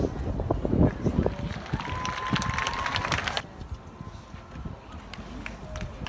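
A horse's hoofbeats thudding on turf, then a burst of crowd applause that cuts off suddenly about three and a half seconds in.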